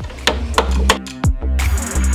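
Electronic background music with a deep, pulsing bass beat and dropping bass hits. Under it, a few sharp taps in the first second fit a hammer knocking a plywood brace into place.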